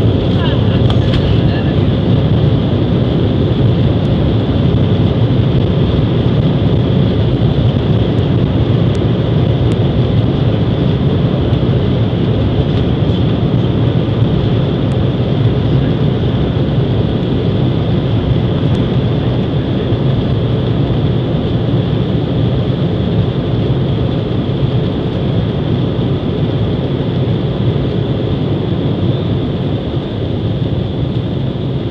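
Embraer E-Jet's twin GE CF34 turbofans at takeoff thrust, heard from inside the cabin during the takeoff roll: a loud, steady deep rumble with a high fan whine on top. The noise eases slightly near the end as the jet rotates and lifts off.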